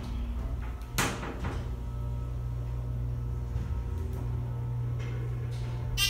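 Elevator car travelling up one floor, with the steady low hum of the ride. A sharp knock comes about a second in as the car starts moving, and a short ringing tone sounds near the end as it arrives.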